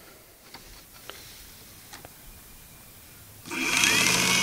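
A 12-volt electric motor, run straight off a 40-watt solar panel, starts about three and a half seconds in as its wires are connected, then runs unloaded with a steady hum and a high whine. A few faint clicks come before it.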